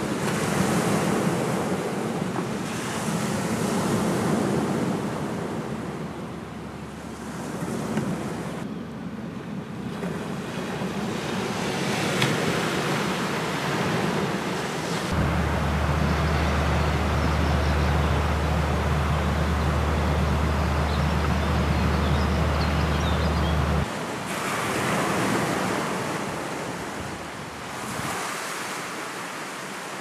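Sea surf breaking and washing over a boulder beach, swelling and easing every few seconds, with wind on the microphone. For a stretch in the middle a steady low wind rumble on the microphone takes over.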